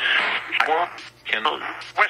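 Spirit box app playing through a phone speaker: chopped fragments of recorded speech and phonemes, starting with a burst of hiss and followed by short broken syllables separated by brief gaps.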